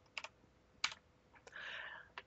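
Computer keyboard keystrokes: a few separate key clicks, spaced out, as a line of code is finished, with a short soft hiss near the end.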